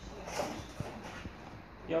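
Hands handling a cardboard box, with a few light taps and rustles from its opened top flaps, under faint background voices.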